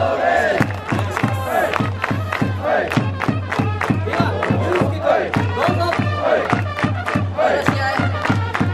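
Stadium crowd of baseball fans chanting and shouting in unison to a steady cheering drum beat, about four beats a second.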